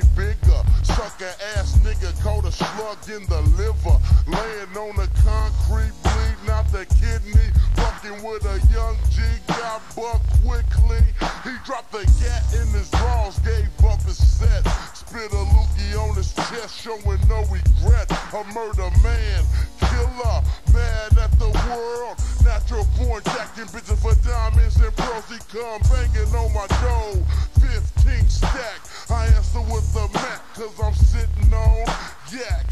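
Slowed-down, chopped-and-screwed hip hop: a rapper's low, drawn-out vocals over a heavy, pulsing bass beat.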